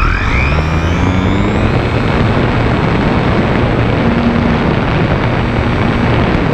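Electric motor and propeller of a HobbyZone Super Cub RC plane, heard through its onboard camera. The pitch winds up over the first couple of seconds, then holds steady, under a loud rush of wind noise over the microphone.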